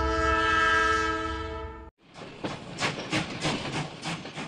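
Train horn sounding one steady chord for about two seconds and cutting off suddenly, followed by the rhythmic clatter of a train's wheels over the rail joints, about four clicks a second.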